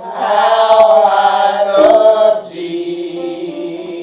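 A church congregation or choir singing a gospel hymn together. A loud sung phrase fills the first half, then the voices settle onto a softer held note.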